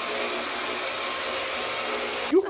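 Upright vacuum cleaner running steadily: an even rush of air with a constant high whine.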